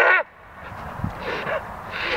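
A person taking a long sniff through the nose, growing louder over about a second and a half, with a couple of soft low knocks.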